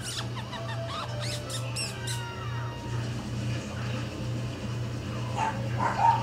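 Havanese puppy whimpering with thin, high-pitched squeaks in the first two seconds or so, then quieter, over a steady low hum.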